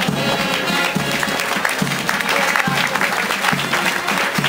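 Marching band music with a steady drum beat just under once a second, and a crowd applauding over it as a contingent marches past.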